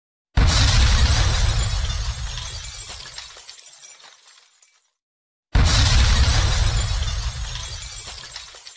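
Sudden crash sound effect with a deep boom, fading out over about four seconds. The same crash comes again about five and a half seconds in.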